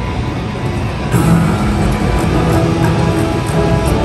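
IGT Lucky Lightning video slot machine playing its spin music while the reels turn. The tune swells and fills out about a second in, then holds steady.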